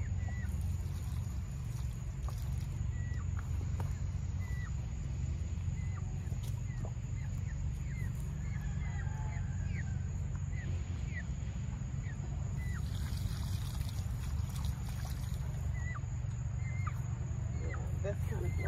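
A steady low rumble with short, high bird chirps scattered throughout, a few a second at times.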